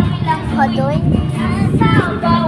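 Children singing a song together, with steady low accompanying notes from a small guitar.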